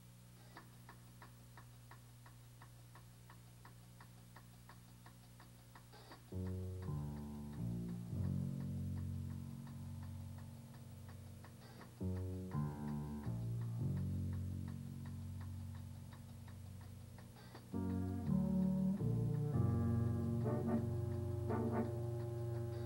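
A jazz big band starting a tune. The drummer ticks out time lightly, about four ticks a second. About six seconds in, the band comes in with low, held chords of horns and bass, which swell again and grow louder near the end.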